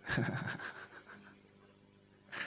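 Burst of human laughter: a quick run of short, breathy pulses that starts suddenly and fades out after about a second.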